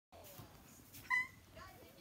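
A single short, high-pitched squeal about a second in, with fainter brief vocal sounds before and after it.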